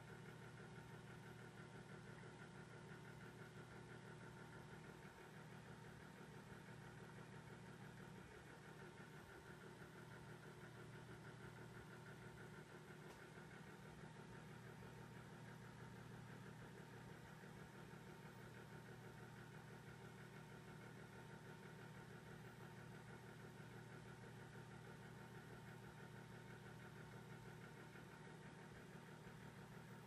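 Near silence: a faint, steady hum with a few thin steady tones in it and no distinct events.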